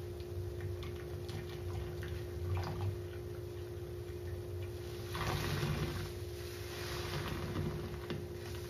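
A soap-soaked sponge squeezed and squished by hand: soft wet squelches and crackling foam, with a longer, louder squelch about five seconds in and another shortly before the end. A steady low hum runs underneath.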